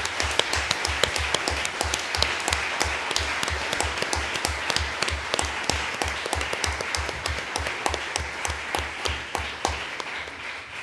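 An audience applauding, with one person's clapping close to the microphone thudding about three times a second. It eases off near the end.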